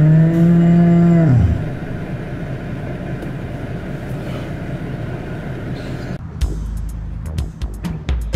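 Cattle in a livestock trailer bellowing: one long, loud moo that rises in pitch, holds, and drops off about a second and a half in. A steady rumbling background follows.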